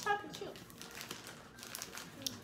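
A plastic snack bag crinkling as it is handled, in faint, irregular rustles.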